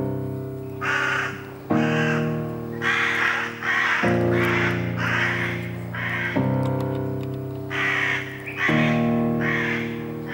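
Film soundtrack music: sustained held chords that change every two seconds or so, with short harsh calls repeating about twice a second over them.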